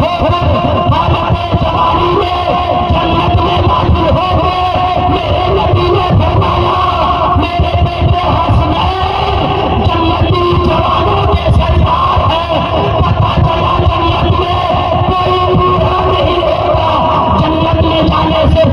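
A man's voice chanting a verse to a sung melody through a public-address system, with long held, wavering notes.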